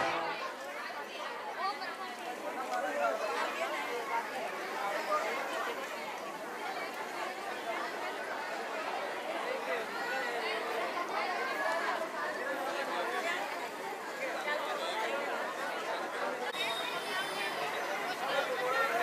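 Crowd chatter: many people talking at once in a steady babble, with no single voice standing out.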